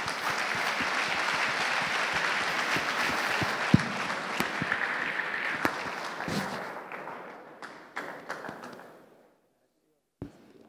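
Audience applause, steady for about seven seconds, then thinning out and dying away.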